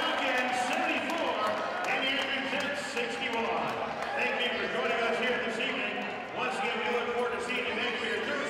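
A man's voice talking continuously over the sounds of a basketball game in an arena, with a ball bouncing on the hardwood court.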